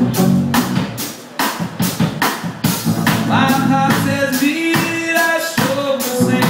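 Live ska band playing an instrumental stretch of a song: drum kit hits about twice a second over bass, guitar and keyboard, with held horn notes from saxophone and trombone.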